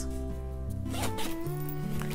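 A zipper on a plush pencil pouch being pulled open, over soft background music with long held notes.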